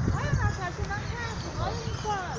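Voices talking in the background without clear words, over a steady low rumble.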